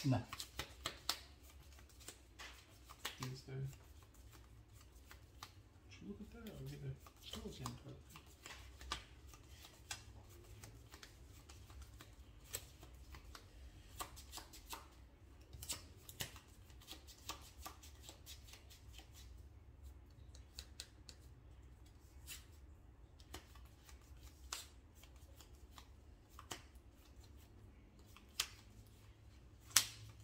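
Sleeved trading cards being shuffled and handled: a run of light, irregular clicks and snaps. A few brief low murmured voices come near the start and about 3 and 7 seconds in.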